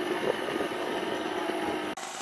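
Power sander running steadily as it sands the teak rubbing strake, with wind buffeting the microphone.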